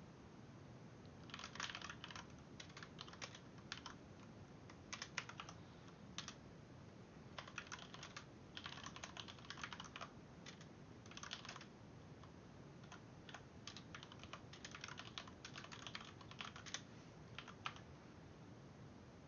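Faint computer keyboard typing: short runs of quick keystrokes with brief pauses between them, starting about a second and a half in.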